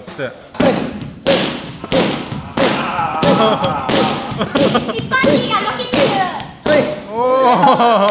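Kicks landing on a handheld kick pad, a run of about ten sharp smacks at a steady pace of roughly one every two-thirds of a second.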